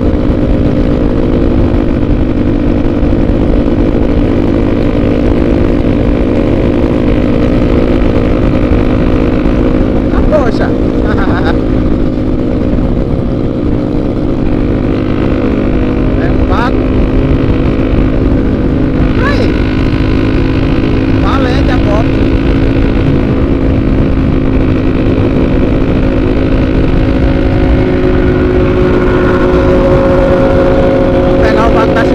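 Honda XRE 300's single-cylinder engine running steadily at highway cruising speed, heard from the handlebars with wind rushing over the microphone.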